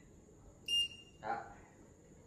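A single short, high-pitched electronic beep from a green-beam laser level as he handles it, about a second in.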